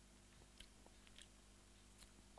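Near silence: room tone with a few faint mouth clicks and smacks from someone tasting whisky, bunched in the first half.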